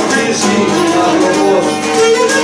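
Live string-band music: a bowed string instrument carrying the melody over strummed and plucked string accompaniment, playing steadily.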